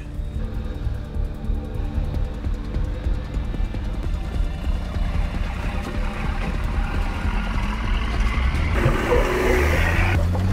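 Background music over a Toyota LandCruiser 80 Series engine crawling up a large rock step; the sound grows louder and fuller near the end as the truck climbs over.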